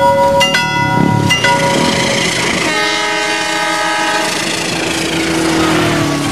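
Train sound effect: railway level-crossing warning chimes repeating about once a second, then a train horn blowing for about a second and a half, with a tone sliding downward near the end as the train passes.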